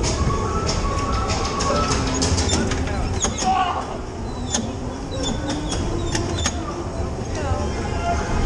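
Dodgem ride din: a low rumble of the bumper cars with scattered sharp knocks and clacks, voices and fairground music mixed in.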